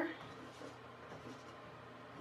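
Chalk dabbing dots onto a chalkboard: faint, scattered light taps and scratches.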